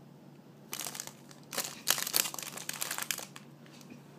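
Clear plastic packaging around a squishy toy crinkling as it is handled, in irregular crackly bursts from about a second in until shortly before the end.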